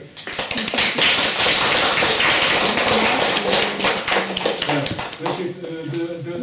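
Audience applauding: a dense run of many hand claps that starts just after the beginning and dies away near the end, with a few voices underneath.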